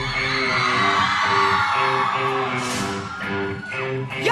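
Live pop-rock band playing, with electric guitar over a steady pulsing beat and a long held high note that drops away near the end.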